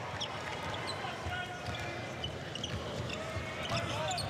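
Arena sound of live basketball play: a ball bouncing on the hardwood court, short high sneaker squeaks, and the crowd murmuring.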